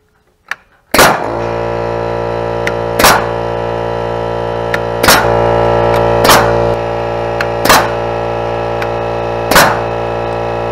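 Grip Rite SB150 pneumatic single-blow joist hanger nailer firing nails through steel joist hangers into timber: six sharp, loud shots at uneven intervals of about one to two seconds. Background music starts with the first shot and runs under them.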